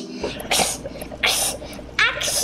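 A person's voice making two short breathy hisses, one about half a second in and one a little past a second in, over a low steady hum.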